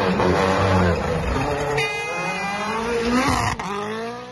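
Rally car engine revving hard as the car passes, its pitch climbing and dropping with the throttle and gear changes. A brief high-pitched whine comes about halfway through. The sound breaks off for an instant near the end, and the engine climbs again.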